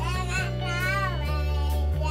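Intro music with steady bass notes and a high, child-like voice singing a wavering melody over it.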